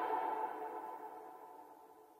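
Closing tones of an electronic dance track ringing out and fading away to nothing.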